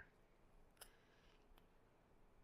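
Near silence, with one small sharp click a little under a second in and a fainter one about half a second later, from a roll of cotton finger tape being handled and wrapped around a thumb.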